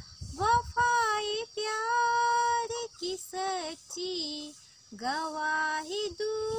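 A young woman singing solo and unaccompanied, in held phrases broken by brief breaths, with a longer pause about four and a half seconds in.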